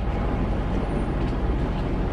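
Steady low rumble of a car's engine and cabin noise, heard from inside the car.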